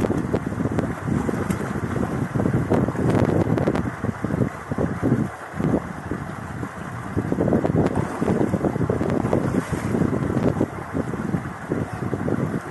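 Water splashing and sloshing as a man washes himself with the water and wades about in an open pool, with wind buffeting the microphone. The sound rises and falls unevenly, with a brief quieter moment about halfway through.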